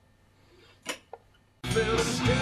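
Quiet room with one short click, then about a second and a half in a rock recording starts playing loudly over studio monitors, with guitar and a full band.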